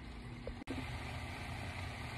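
Steady low hum with a faint hiss from the kitchen stove area, broken by a short dropout about two-thirds of a second in where the recording is edited.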